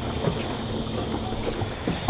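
A few small metallic clicks as a hand tool tightens the nuts on a wire-rope clip locking off a steering cable, over a steady low background rumble.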